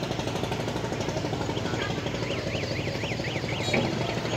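Engine of a small wooden river boat running steadily with a fast, even beat. A high chirp, rising and falling several times in quick succession, sounds over it past the middle.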